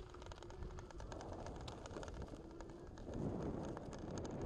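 Onewheel V1 rolling over grass and dirt: low rumble from the fat tire and ground with scattered small ticks, a faint steady hum that comes and goes, and a louder rough swell near the end.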